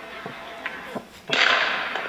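A gender-reveal ball bursting into blue powder: a sudden hissing puff of noise a little past halfway through, lasting well under a second and fading.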